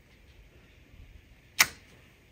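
Quiet handling of a clear acrylic stamp block pressed onto cardstock, then a single sharp click from the acrylic block about one and a half seconds in.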